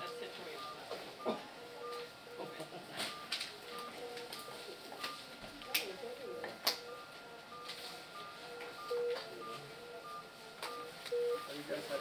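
Repeating electronic alarm beeps from ICU medical equipment: a short higher beep about every half second and a lower beep every second or so. Faint voices and a few sharp clicks sound behind them.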